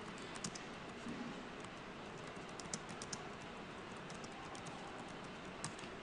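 Typing on a computer keyboard: a run of faint, irregular key clicks.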